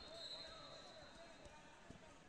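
Faint large-gym ambience during a wrestling bout: a thin, high referee's whistle tone fading out in the first second or so, distant voices, and a few dull thumps of feet on the wrestling mat, one near the end.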